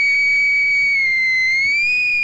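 Electronic dance music in a beatless break: a single high synthesizer tone is held, sagging slightly in pitch and rising back near the end.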